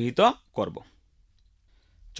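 Speech: the end of a spoken phrase in the first half-second, then a pause of about a second and a half with near silence.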